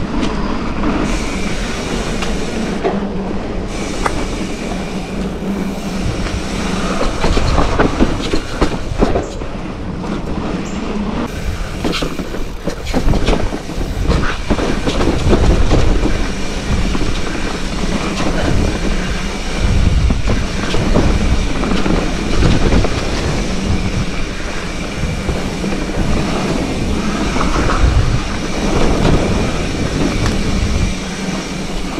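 Mountain bike ridden fast on a dirt singletrack trail: tyres rolling on dirt under a constant rushing noise, with the frame and parts rattling and knocking over bumps and roots throughout.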